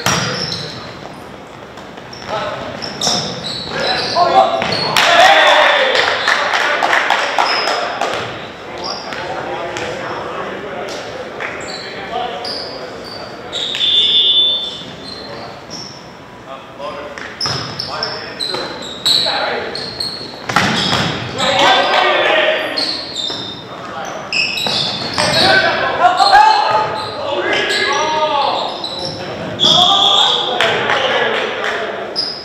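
Volleyball play on a hardwood gym floor: repeated sharp ball hits and bounces, and players shouting, all echoing in the large hall. A short, high referee's whistle sounds about halfway through.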